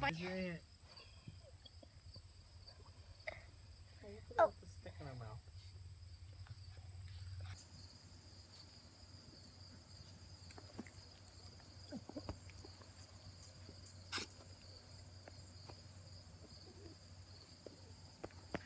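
Sheltie puppies playing on grass: mostly quiet, with soft scattered scuffling and rustling, and one brief vocal sound about four seconds in. A faint steady high-pitched hum runs underneath.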